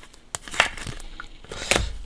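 Clear plastic trading-card sleeve crinkling as a card is handled, with a few sharp clicks and taps, the strongest near the end.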